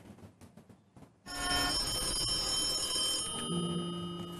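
An old desk telephone's bell ringing, starting suddenly about a second in with a metallic ring that slowly fades.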